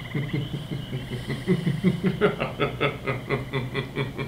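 A man laughing: a long run of short pulses at about five a second, loudest around the middle.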